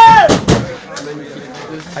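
A loud shout of "ouais!" with two or three heavy thumps in the first half second, then quieter voices chattering in a tiled, echoing room.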